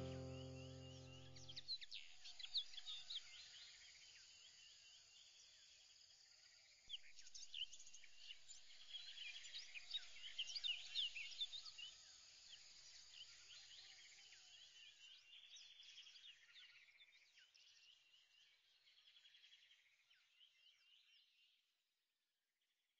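Background music trailing off in the first two seconds, then faint bird-like chirping, many short quick calls, that gradually fades away.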